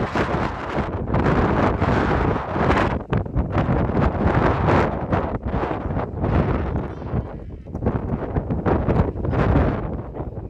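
Wind buffeting the microphone: a loud, low, uneven rumble that surges and dips in gusts.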